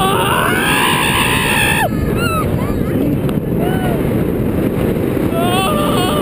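Steel roller coaster ride heard from a rider's seat: a steady rush of wind and rumble of the train on the track, with a rider screaming for about two seconds at the start, the scream falling away, then a few short whoops and yells.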